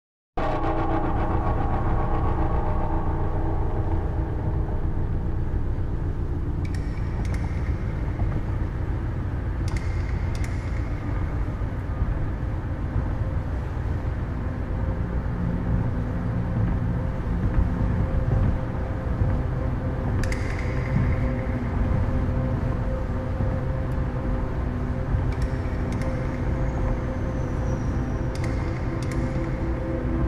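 Steady low rumble of a moving vehicle heard from inside, with a few brief hissing swishes every several seconds, under a sustained musical drone.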